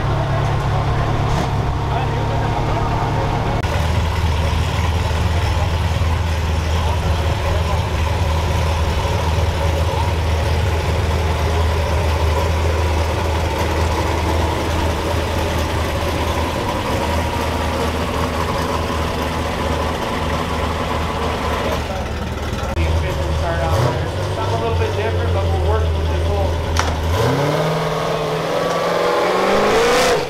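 Race truck engine idling with a steady low rumble, then revving up near the end, with voices in the background.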